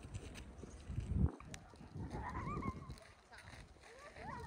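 Faint outdoor ambience: a low rumble that swells about a second in, with a few short, faint rising-and-falling calls past the middle.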